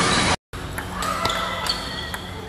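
Celluloid-type table tennis balls clicking sharply off bats and tables in a few separate ticks. The sound drops out briefly near the start.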